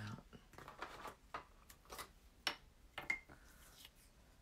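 Light clicks and rustles of a pair of scissors being picked up and a paper tag being handled on a craft table, with two sharper clicks near the end.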